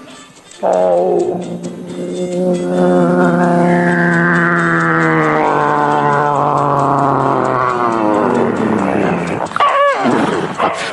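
A man's voice making a long, droning sound effect into a microphone held against his mouth: one sustained pitched drone of about nine seconds. It opens with a short falling slide and swells brighter in the middle before fading out.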